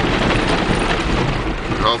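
A Jeep driving over a bumpy dirt and gravel road, heard from inside the cab: a loud, steady rumble of tyres, suspension and body over the rough surface. A man's voice starts right at the end.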